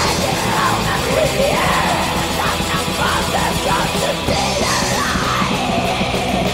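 Black/thrash metal song with harsh yelled vocals over the band's heavy metal instrumentation.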